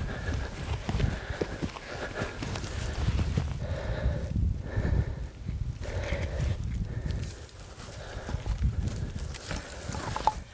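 Wind gusting on the microphone, an uneven rumble, with rustling and scuffing as people crawl over dry, burnt grass.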